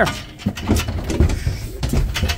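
Sheep shifting about inside a livestock trailer: irregular clattering knocks and thumps of hooves on the trailer's metal chequer-plate floor.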